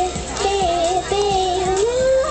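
A young girl singing a melody into a microphone over a backing track with a steady beat, holding sustained notes.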